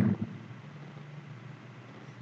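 A spoken word trails off at the very start, then a faint steady background hum with a light hiss and no distinct events.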